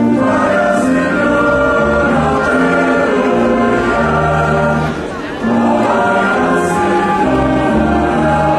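A church choir singing the Mass's entrance hymn in long held notes, with a brief break between phrases a little after five seconds in.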